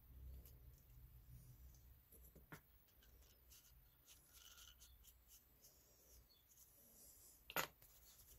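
Near silence with a few faint clicks and rubs of a plastic clay extruder's parts being handled and fitted together, the sharpest click near the end.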